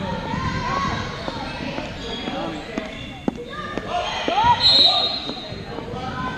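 Indoor gymnasium ambience of children's and adults' voices echoing in the hall, with a few sharp basketball bounces near the middle and a short, loud high-pitched tone about three-quarters of the way through.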